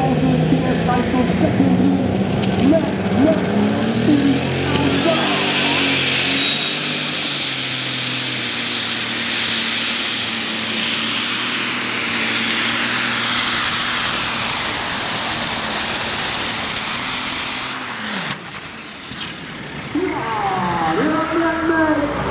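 Mad Max Stage 5 pulling tractor's engine revved up at the line, then run hard at full throttle for about thirteen seconds as it pulls the weight sled, a loud high-pitched sound with a rising whine. It falls away sharply near the end of the run, and a voice comes in over it.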